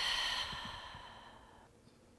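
A woman's open-mouthed sigh as a clearing breath: a long breathy exhale that fades away over about a second and a half.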